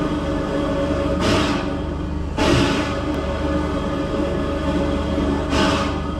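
Eerie, droning music with the sound of a steam locomotive standing at rest, broken by three short bursts of hissing steam: about a second in, shortly after, and near the end.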